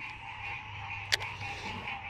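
Frogs calling in a steady, unbroken chorus, with one short sharp click a little past the middle.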